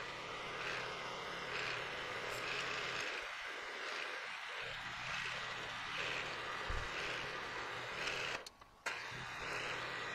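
Milling machine running during drilling into an aluminum block: a steady machine noise with a low hum. The sound cuts out briefly about eight and a half seconds in, as the microphone's failing battery drops the audio.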